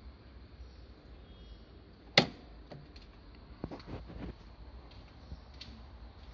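One sharp, loud mechanical click about two seconds in, then a fainter click and a short cluster of softer clicks and knocks a second or two later, over a low steady hum.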